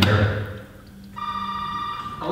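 A steady electronic tone, like a phone ringing, held for about a second, with a low hum beneath it, after a voice over music stops.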